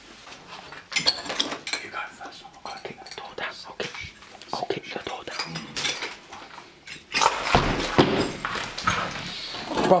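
Footsteps crunching over broken glass and debris on a hard floor: a run of short clinks and crackles. About seven seconds in, a louder stretch of rustling and scraping noise begins.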